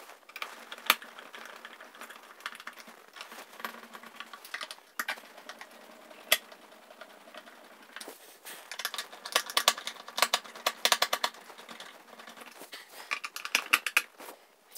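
Phillips screwdriver turning the clamp screws of an in-ceiling speaker by hand, making small mechanical clicks and ticks. There are a few single sharp clicks and a dense run of rapid clicking about two-thirds of the way in.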